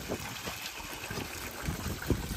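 Clothes being scrubbed and swished by hand in a bucket of soapy water, with irregular splashing and sloshing, over a steady trickle from a running outdoor tap.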